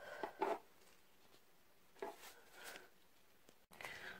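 A few faint, short handling sounds, soft taps and rustles, with near silence between them; the sound drops out abruptly shortly before the end.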